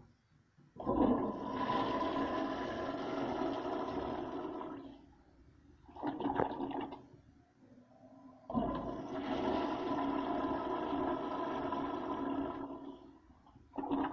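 A 1920s toilet flushing twice. Each flush is a loud rush of water that starts suddenly and lasts about four seconds, with a shorter burst of water noise between them and a few clicks near the end.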